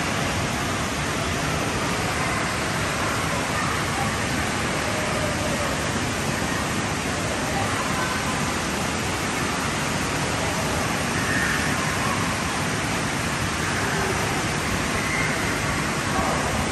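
Steady rush of water pouring from the water-slide outlets into the splash pool of an indoor water park, with faint distant voices.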